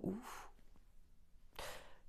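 A woman's short, audible sigh-like breath about three-quarters of the way in, following a brief trailing spoken word; otherwise quiet.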